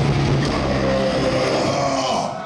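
Live death metal band's heavily distorted electric guitars and bass holding sustained notes with the drums, as the song winds to its close; the wall of sound drops away just after.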